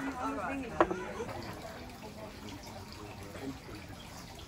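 People talking at an outdoor café table, with one sharp clink about a second in; after that the talk drops to a quieter murmur.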